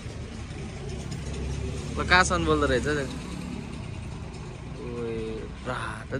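Motorcycle engine idling steadily, with a person's voice briefly about two seconds in and again near the end.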